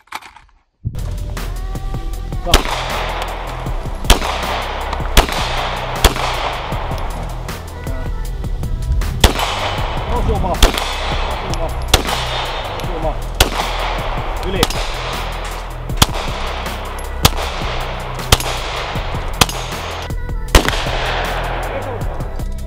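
Handgun shots fired one at a time, about fifteen sharp cracks roughly a second to a second and a half apart, each with a short fading echo, over electronic music with a steady heavy bass.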